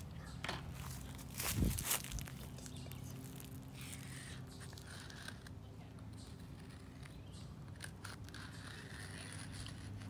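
Sidewalk chalk scraping on a concrete sidewalk in short, scratchy strokes. A few louder knocks and rustles come in the first two seconds. A steady low hum runs underneath.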